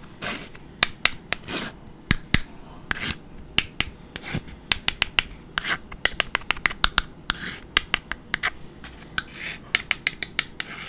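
Two flat wooden craft sticks tapped and rubbed against each other close to the microphone. Sharp wooden clicks, some in quick runs, alternate with short scratchy scraping strokes about every one to two seconds.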